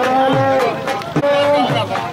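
A man singing long, wavering held notes, with low drum strokes beneath.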